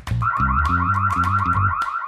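A pickup truck's car alarm going off with a fast, rapidly warbling tone just after its door handle is tried, over background music with a steady beat.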